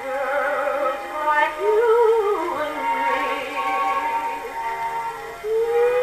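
Victor acoustic gramophone playing a 78 rpm shellac record: a woman sings long held notes with a wide vibrato, with orchestra behind her. The sound is thin, with little bass.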